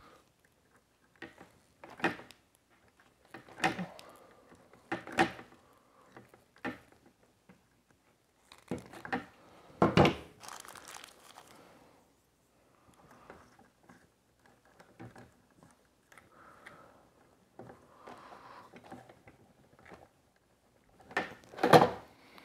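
Hands working insulated wires and plastic twist-on wire connectors inside a plastic electrical box: irregular small clicks, knocks and rustles, louder about ten seconds in and again near the end.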